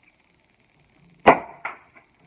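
Cork popping out of a bottle of Prosecco: one loud, sharp pop a little over a second in, with a short hiss of escaping gas and foam after it, then a second, smaller click.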